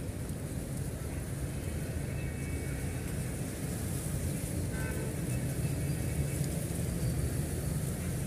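A steady low rumble with a faint high hiss above it, unchanging throughout.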